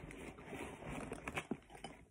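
Rustling and crinkling as hands rummage in a nylon backpack pouch and pull out a bundle of 550 paracord and a packaged fire cord, with a few light clicks about a second and a half in.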